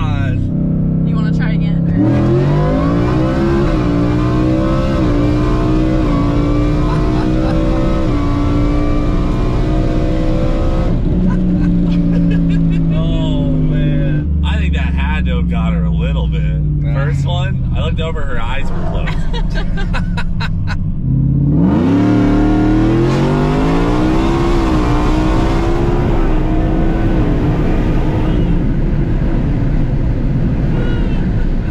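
Whipple-supercharged Ford F-150 engine pulling hard at full throttle, heard from inside the cab: the pitch climbs steeply, then steps down at gear shifts midway. About two-thirds of the way through it drops low and climbs steeply again into a second hard pull.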